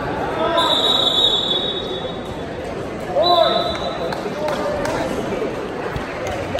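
A whistle blown twice in a gym: a long steady blast of about a second and a half, then a shorter one about three seconds in, over people's voices.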